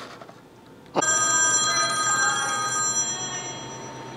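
Telephone ringing: one ring that starts suddenly about a second in and fades away over the next few seconds.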